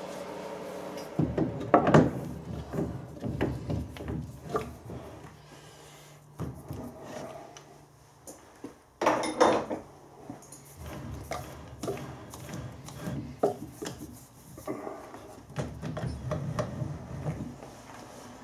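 Clunks, scrapes and rattles of heavy steel machine parts being handled as a chuck is fitted onto a dividing head on a lathe's cross slide, with the loudest clanks about two seconds in and again about nine seconds in.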